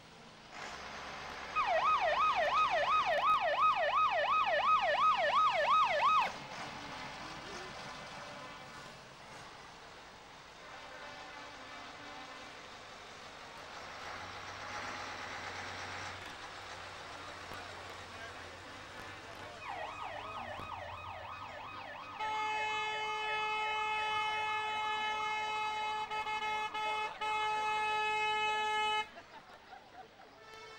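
Emergency-vehicle siren warbling fast, rising and falling about two or three times a second, for about five seconds. It sounds again briefly later and gives way to a steady vehicle horn note held for about six seconds near the end.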